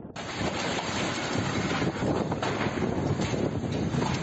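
Lodos storm wind blasting across a phone's microphone: a loud, continuous rushing roar that rises and falls with the gusts.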